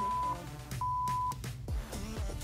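Two half-second electronic beeps at one steady pitch, about a second apart, counting down the last seconds of an exercise interval, over party music. Near the end the music switches to a new track with a beat.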